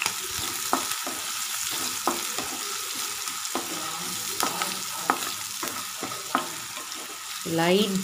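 Chopped onions and a green chilli sizzling in hot oil in a kadai, stirred with a wooden spatula that scrapes and knocks against the pan every second or so.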